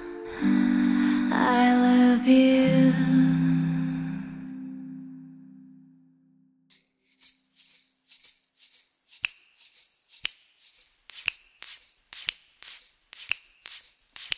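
The last held notes of the music fade out over the first few seconds. After a short silence a small round wooden hand shaker is shaken in a quick, even rhythm of short strokes, about three a second.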